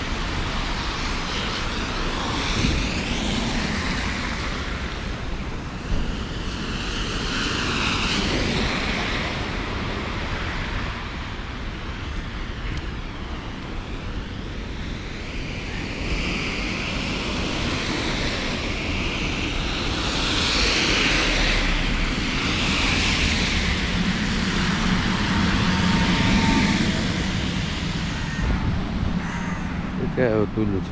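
Car tyres hissing on a wet road, swelling as vehicles pass about a quarter of the way in and again past the middle, over a steady rush of wind and rain noise on the microphone.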